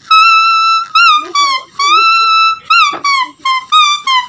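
A green leaf held between the lips and blown like a reed, playing a loud tune of long, high notes that swoop and bend in pitch, broken by short gaps.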